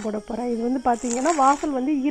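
A woman's voice speaking throughout, over a steady high-pitched hiss.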